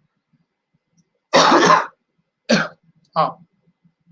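A man coughing: one harsh cough just over a second in and a shorter one about a second later, followed by a brief voiced 'aah'.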